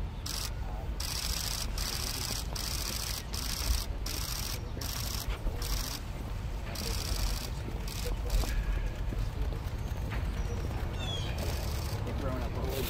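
Outdoor ambience of a steady low rumble with faint murmured voices. Bursts of high hiss start and stop abruptly throughout, and a few short bird-like chirps come near the end.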